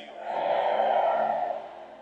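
Sustained background music chords held under a pause in the preaching, with a loud rush of noise that swells up and fades away over about a second and a half in the middle.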